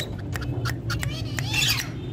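Female Indian ringneck parakeet making a quick series of short clicks and chirps, with a louder squawk about one and a half seconds in.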